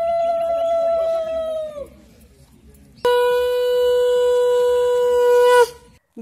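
Conch shell (shankha) blown in two long, steady blasts. The first dies away about two seconds in, sagging in pitch as it ends. After a short pause a second, lower blast sounds from about three seconds until near the end, dropping in pitch as the breath runs out.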